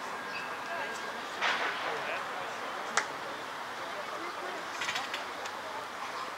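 Outdoor stadium ambience: indistinct voices over a steady background hiss, with a short burst of noise about one and a half seconds in and a single sharp click about three seconds in.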